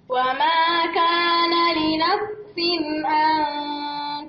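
A woman reciting the Quran in a melodic chant, drawing out long held notes in two phrases with a brief breath between them about two seconds in.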